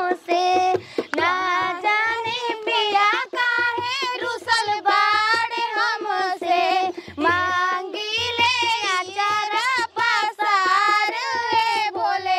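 A high-pitched female voice singing a song with long, wavering, ornamented notes over a music track with a low drum beat.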